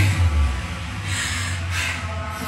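A woman laughing breathlessly, heard as two short airy outbreaths with little voice, over a steady low hum.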